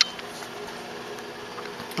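Faint steady electrical hum with an even hiss from the running off-grid power equipment (inverters and charge controllers), holding a few thin steady tones.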